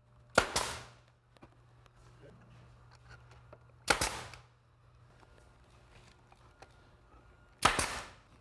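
A nail gun fires three times, about three and a half seconds apart, driving fasteners into the joints of a wooden railing panel. Each shot is a sharp crack with a brief tail.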